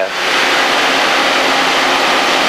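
Light aircraft in level cruise flight: a steady rush of engine, propeller and air noise with a faint low engine hum under it.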